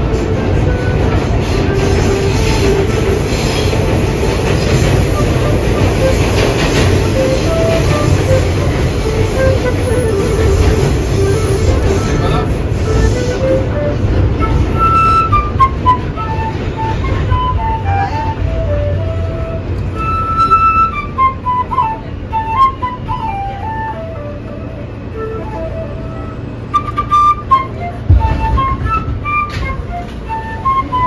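New York subway car running with a heavy rumble, loudest in the first half and easing toward the end. Over it a busker plays a simple one-note-at-a-time melody on a small flute.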